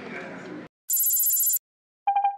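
Murmur of voices in a large hall cuts off abruptly less than a second in. A loud, very high-pitched, rapidly pulsing electronic tone follows for under a second: the start of a news agency's closing logo sting.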